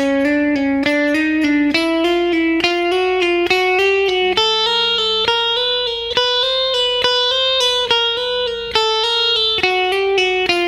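Clean Telecaster-style electric guitar playing a slow single-note slur exercise: picked notes joined by hammer-ons and pull-offs, moving in small steps up and down the string.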